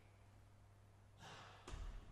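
Near silence over a steady low electrical hum, broken near the end by a person's breath and a brief low thump.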